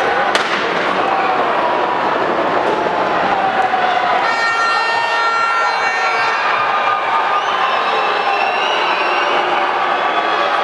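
Arena crowd at a lucha libre match shouting and cheering, with a thump about half a second in and a steady high pitched tone held for about three seconds from about four seconds in.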